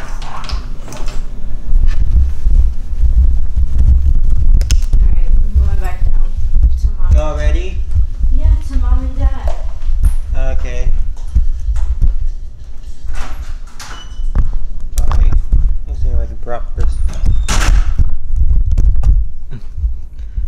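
A person's indistinct voice over a heavy low rumble, with scattered clicks and knocks.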